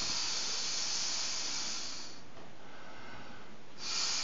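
A person blowing air by mouth into the valve of a vinyl inflatable toy. One long blow eases off about two seconds in, and after a short pause the next blow starts near the end.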